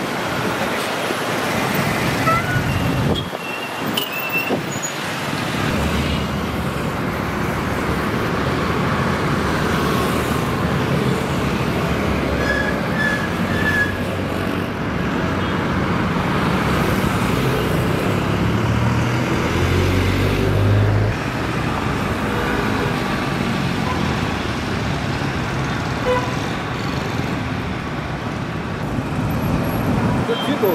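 Dense city road traffic: motorcycles, buses and cars running together, with a few short horn toots. A low engine rumble swells and then cuts off sharply about two-thirds of the way through.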